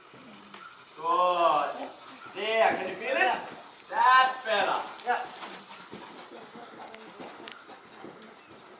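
A person's voice in three short, drawn-out calls, one after another in the first five seconds, with the words not made out.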